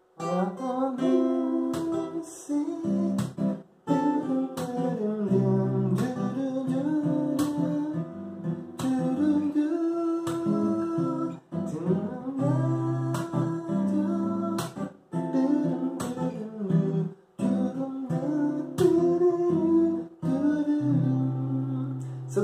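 Acoustic guitar playing the chords of a song, strummed and picked, with short breaks between phrases.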